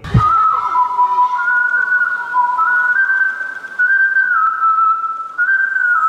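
A whistled melody in two parallel lines, stepping between long held notes, as the intro of a pop song before the full band comes in.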